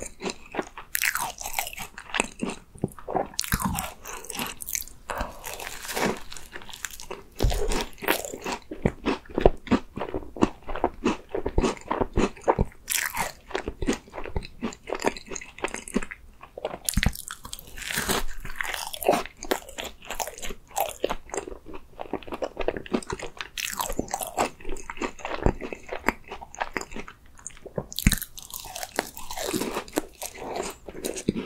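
Close-miked eating sounds of biting into and chewing a sweet red bean cream tart, with the pastry shell crunching in quick, irregular bursts between bites.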